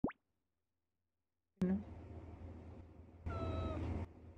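Domestic tabby cat giving a soft, short 'uu~' murmur in reply, one drawn tone of about half a second near the end. Before it, a quick rising blip at the very start and a louder brief sound with a voice about a second and a half in.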